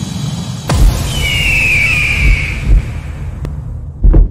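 Logo-intro sound design: a low, steady rumble with a sharp hit just under a second in, and a high, drawn-out screeching cry that falls slightly from about one second to nearly three seconds in.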